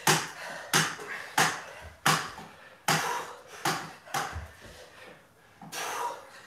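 Rubber hex dumbbells knocking on the floor mat again and again during fast dumbbell snatches, about one knock every 0.7 seconds, with a short pause near the end.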